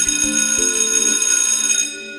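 Electric school bell ringing loudly for about two seconds, cutting off suddenly near the end, over background music.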